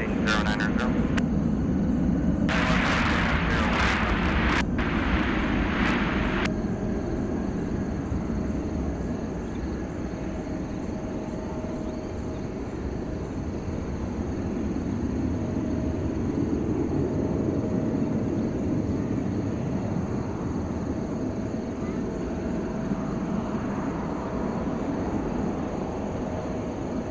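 Twin-engine widebody jet airliner's engines at takeoff power, heard from a distance as it rolls down the runway and climbs away: a steady low roar that swells and eases. A burst of hiss runs from about three to six seconds in.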